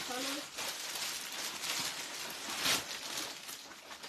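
Clear plastic bag around a packed saree crinkling and rustling as it is handled and lifted, with louder crackles about a second and a half in and again near three seconds. A brief voice sound comes at the very start.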